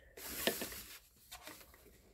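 Cardboard presentation box lid being lifted open, a sliding, rustling scrape of card on card lasting about a second with a sharper tick in the middle, followed by a few faint handling ticks.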